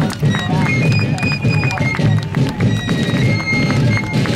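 Fifes and field drums of a fife-and-drum corps playing a march: shrill held fife notes stepping through a tune over a steady drumbeat.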